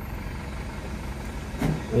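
Steady low rumble of vehicle noise heard from inside a stopped car: the car's own engine and the traffic around it.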